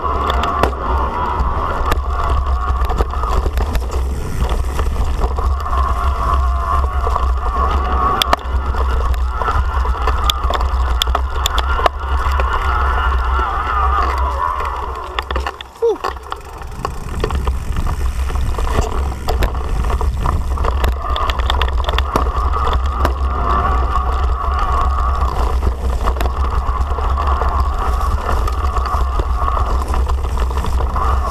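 Yamaha PW-X mid-drive e-bike motor whining under pedal assist as the bike is ridden, mixed with heavy wind rushing over the handlebar-mounted microphone and knobby tyres rolling. The sound dips briefly about halfway through, then picks up again.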